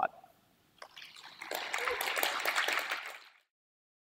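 Audience applauding, building up about a second in and cut off abruptly after about three and a half seconds.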